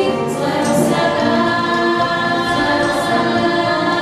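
A choir singing a church hymn, several voices holding long notes together.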